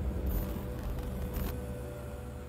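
Short closing music sting for a logo animation: a deep bass rumble under a held tone, with two brief high swishes, one about a third of a second in and one about a second and a half in. It slowly gets quieter.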